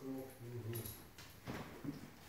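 Beagle whining briefly, followed by a few light clicks and knocks.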